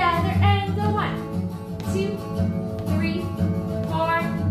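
A song playing, with a singing voice over music and a steady beat.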